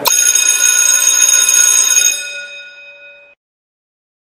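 Alarm clock bell ringing loudly for about two seconds, then fading away and cutting off suddenly.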